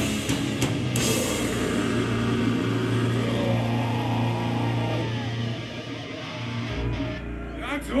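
Live death metal band playing the last bars of a song: distorted guitars and drums, which thin out about five seconds in to held chords ringing out over a low bass note. A man's shouted voice comes in right at the end.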